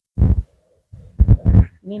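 Dull thumps and rustling from clothes on plastic hangers being pulled off a rail and brought up against the phone's microphone, in two clusters: one just after the start and another just past a second in.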